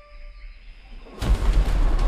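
A brief hush with a faint high whistle, then about a second in a sudden loud rush of flapping wings and air as a flock of birds sweeps overhead.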